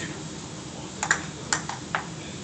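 Table tennis ball clicking sharply off paddle and table during a rally: about five quick taps in the second second, two of them close together about a second in.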